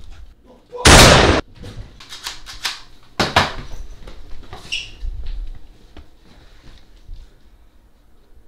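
A single very loud bang about a second in, followed by a series of sharper knocks and clatter.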